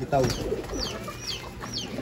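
Racing pigeons in a loft cooing, with a small bird's high chirp repeating about two or three times a second.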